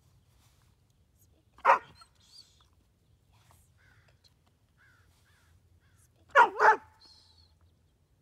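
Border Collie barking on cue, loud: a single bark about two seconds in, then two quick barks close together near the end.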